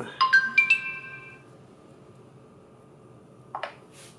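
Smartphone notification chime: four quick notes rising in pitch, each ringing on and fading away within about a second. Near the end there is a brief soft noise.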